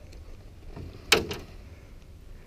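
Two sharp knocks a fraction of a second apart, about a second in, as a largemouth bass is landed, over a faint low rumble.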